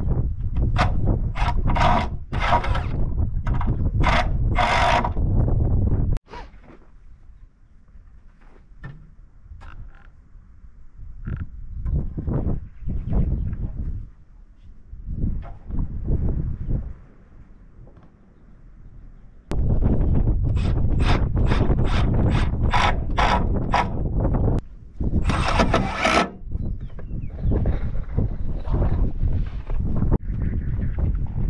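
Power drill driving fasteners into wooden roof rafters, running in long bursts of repeated sharp strokes, with quieter scattered clicks and knocks on the timber framing in between.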